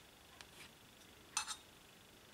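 Small clicks from watercolour painting tools: a couple of faint ticks, then two sharp clicks close together about a second and a half in.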